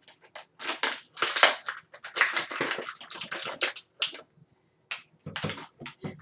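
Plastic toy packaging crinkling and crackling as it is handled and torn open, in irregular bursts that are busiest in the middle.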